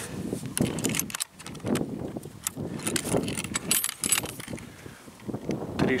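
Handling noise close to the microphone: irregular rustling with light clicks and metallic rattles as gear is moved by hand.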